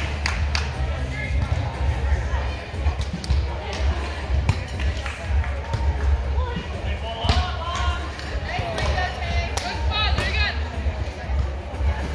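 Background music playing in a large hall, with voices calling around the courts and sharp slaps of a volleyball being hit during a beach volleyball rally on sand.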